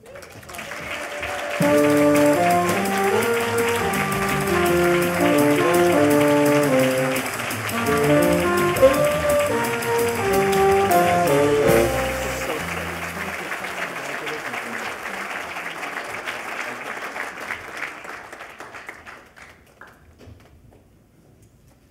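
Audience applauding, building up over the first second or two and tapering off over the last several seconds. Music with a melody and bass line plays over the applause from about a second and a half in until about thirteen seconds in.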